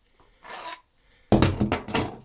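Steel parts of a tap splitter kit being handled and rubbed against each other, with a soft scrape about half a second in and a sudden louder clatter in the second half.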